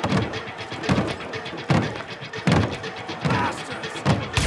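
Heavy thuds at a steady pace, about one every 0.8 seconds, over the continuous noise of a crowd.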